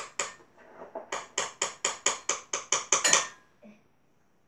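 A rapid run of about a dozen sharp clicks, roughly six a second, ending a little over three seconds in.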